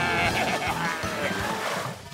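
A cartoon character laughs briefly at the start, over adventure background music that carries on after the laugh.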